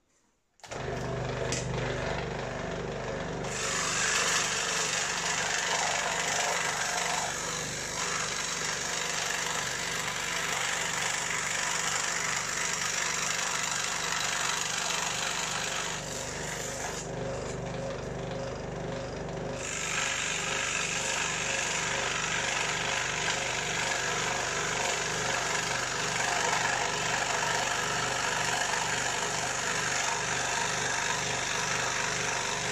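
Electric scroll saw starting up and running steadily, its reciprocating blade cutting 1/8-inch plywood. Past the middle the cutting noise drops away for a few seconds while the saw keeps running, then the blade bites into the wood again.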